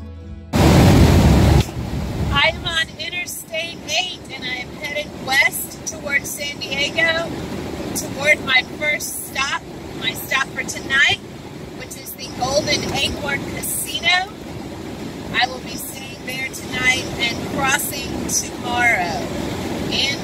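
A woman talking over steady road and wind noise inside a moving motorhome's cab. A loud rush of noise comes about half a second in and lasts about a second.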